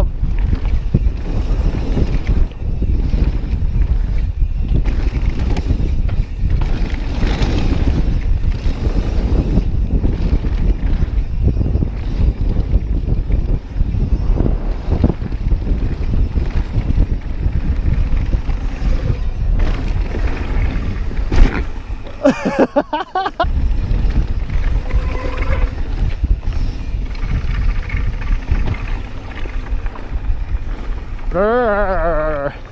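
Wind buffeting the camera microphone of a mountain bike riding fast downhill, over the rumble of tyres on a dirt trail and scattered knocks from the bike over bumps. About three-quarters of the way in, a sharp knock, then a short wavering high-pitched sound.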